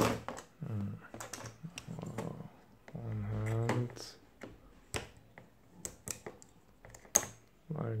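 Repeated small clicks and plastic taps from handling a bare epilator circuit board and its lithium-ion battery cell, irregular like typing, with a short low murmur about three seconds in.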